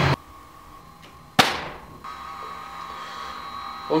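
A single sharp hit about one and a half seconds in, its tail fading over about half a second, then a faint steady electrical hum with a clear tone.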